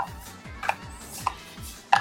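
Metal spoon clicking and scraping against a small clear condiment container while fukujinzuke pickles are spooned out, four sharp clicks about half a second apart.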